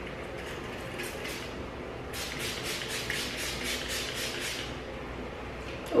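Fine-mist pump spray bottle of hair mist being sprayed onto hair. A few faint sprays come first, then about two seconds in a quick run of short hissing sprays follows, about four a second, for two and a half seconds.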